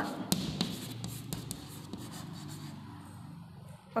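Chalk writing on a chalkboard: short scratches and taps of the chalk, stroke by stroke.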